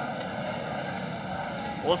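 Steady low background noise of a kickboxing arena hall between commentary lines, with no distinct strikes; a commentator's voice starts near the end.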